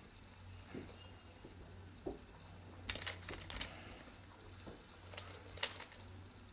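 Light plastic clicks and knocks as an action camera in a clear plastic housing is handled and turned on a bicycle handlebar clamp mount: a couple of soft knocks, a quick run of clicks about three seconds in, and a few more near the end, over a faint steady hum.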